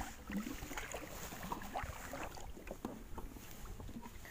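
Water lapping and splashing against the side of a small wooden boat, with scattered light knocks and rustles.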